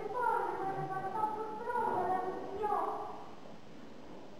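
Group of children singing a song together, the melody stopping a little over three seconds in.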